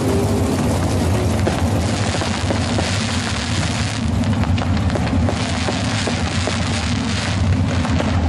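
Fireworks fizzing and crackling in a dense stream of small pops, over the steady low rumble of a field of 360 sprint car V8 engines.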